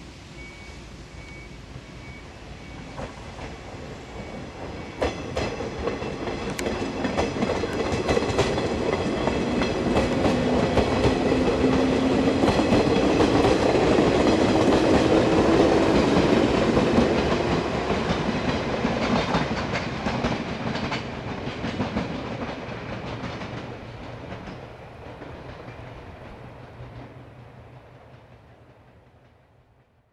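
JR 107 series electric train passing close by. It grows louder, peaks as the cars go past with a rising whine and the wheels clicking over the rail joints, then fades away.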